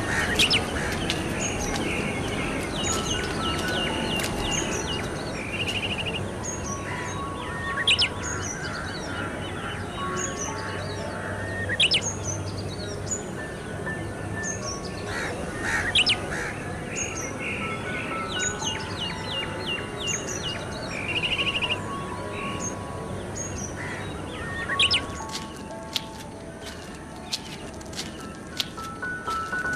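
Background music with birdsong chirps and trills woven in. The same pattern of chirps comes round again about every sixteen seconds, with a sharp tick about every four seconds.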